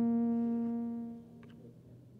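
The band's last held chord, with bass, keyboard and saxophone, ringing out on one steady pitch and fading away about a second in, leaving a few faint clicks.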